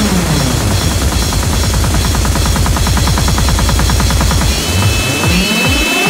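UK bounce dance music from a DJ mix. A falling synth sweep runs into a fast, dense bass roll. Near the end the roll breaks off, a rising sweep begins, and heavy kicks return at about three a second.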